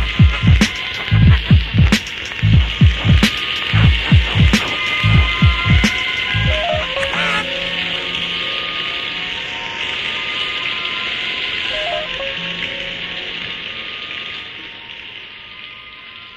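Instrumental hip hop beat from a cassette tape: heavy kick drums and hi-hats in a steady rhythm until about six seconds in, then the drums drop out, leaving a steady hiss and a few held synth tones that fade out near the end.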